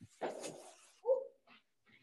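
Rustling of leafy turnip greens as a bunch is laid on a digital scale, followed about a second in by a short, louder yelp-like sound.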